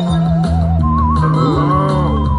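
Slot machine bonus-round music: a warbling, wavering sci-fi melody over steady bass notes, the high tone stepping up in pitch about a second in. Swooping, gliding sound effects come in near the end as the UFO beams land on the reels.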